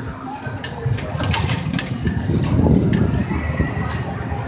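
Irregular clicks and creaks from a swinging Ferris-wheel car and its steel frame as the wheel turns, over a low rumble.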